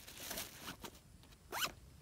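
Zipper on an inner mesh pouch of a Vertx EDC backpack being pulled: a short rasp of zipper teeth about half a second in, then a quick, sharp zip stroke near the end.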